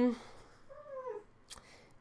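One short, faint cat meow that falls in pitch at its end, followed by a light click of paper being handled.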